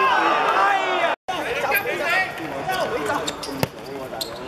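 Several men shouting and calling over each other during an amateur football match, cut off briefly about a second in, with one sharp thud of the ball being kicked near the end.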